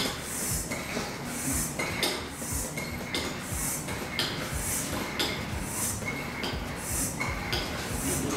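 Floor-type air pump worked in steady strokes about once a second, each stroke a brief high note and a hiss of air, pumping air into a sealed plastic bottle to build up pressure inside it.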